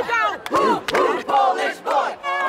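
A small crowd whooping and shouting in excitement: several short, loud cries in quick succession, rising and falling in pitch.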